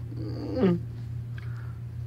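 A voice drawing out a single bleat-like 'maa' call that falls in pitch, loudest a little over half a second in, over a steady low hum.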